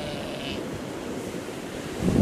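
Steady wash of surf with wind on the microphone.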